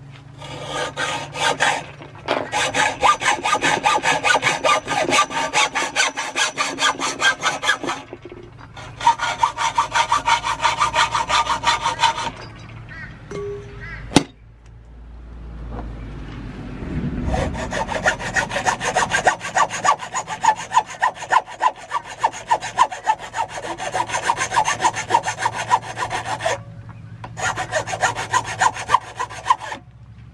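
A hand hacksaw cutting through an aluminium awning pole clamped in a bench vise, in two runs of back-and-forth strokes over the first twelve seconds or so. A single sharp knock comes about halfway. Then a hand file works the cut end of the tube in quick rhythmic strokes, smoothing the inside of the tube.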